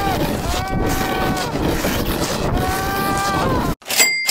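A person's three long, high-pitched cries, each arching slightly and falling at its end, over a loud steady rushing noise. The cries come from a fallen snowboarder lying on the snow.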